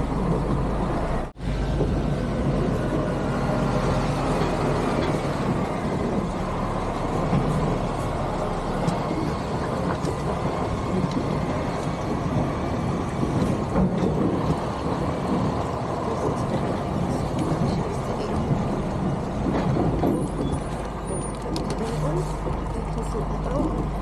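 Truck's diesel engine running steadily at low speed, heard from inside the cab, as the lorry is manoeuvred. The sound drops out for an instant about a second in.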